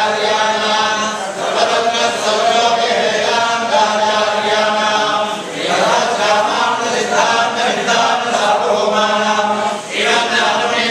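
Several men's voices chanting a Hindu devotional recitation together in unison, in long held phrases with brief breaks about a second in, about halfway and just before the end.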